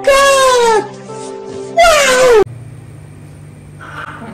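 A man's loud, high-pitched laughing cries, two long shrieks each falling in pitch, over background music that fades to a quiet low hum after the second cry.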